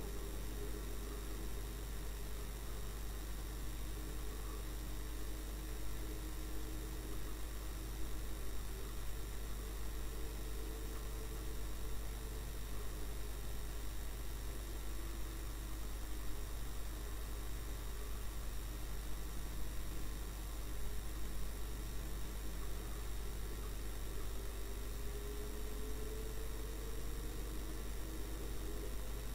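Steady low hum and hiss, with a faint vehicle engine note underneath whose pitch slowly rises and falls as it drives.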